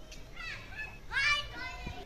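A high-pitched voice calling out once about a second in, rising and then falling in pitch, with fainter high calls just before it.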